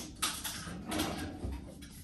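Rummaging through a refrigerator: containers and jars being shifted on the shelves, with a few short knocks and rustles.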